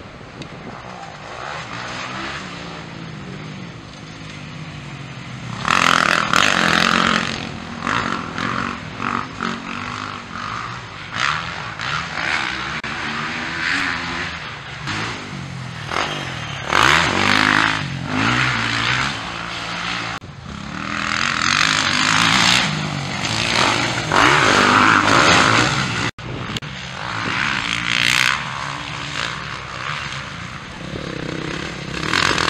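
Motocross bikes racing on a dirt track, engines revving up and down through jumps and corners. The pitch rises and falls, and it gets louder as bikes pass close, most of all about six seconds in, around seventeen seconds, and again from about twenty-two to twenty-five seconds.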